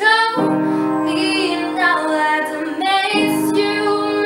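A young woman singing a pop ballad melody, accompanied by piano chords. A new chord is struck about a third of a second in and another about three seconds in.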